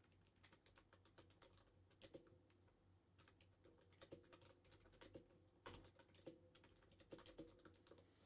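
Very faint typing on a computer keyboard: an irregular run of soft keystrokes.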